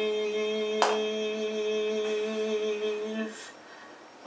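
A man's voice holding one long, steady sung note that stops about three seconds in, with a single sharp click about a second in.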